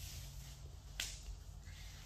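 Quiet sounds of two people grappling on a foam mat, with one sharp slap about a second in, over a low steady hum.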